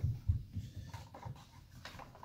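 Unboxing handling noise: a couple of soft low knocks against a cardboard box near the start, then faint rustling of a clear plastic wrapper as a mouse pad is pulled out.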